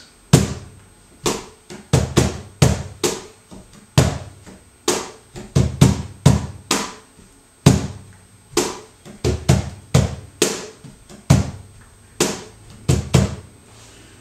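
A cajón played by hand in the slow tientos compás, in a funkier, more rock-like variation. Deep bass strokes are mixed with sharper snare slaps in an uneven, repeating rhythm.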